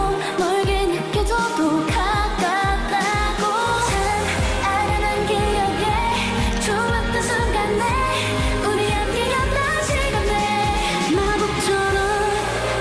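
A K-pop girl group's voices singing a dance-pop song into headset microphones, over an instrumental with a steady kick-drum beat. About four seconds in, a held bass line comes in under the singing.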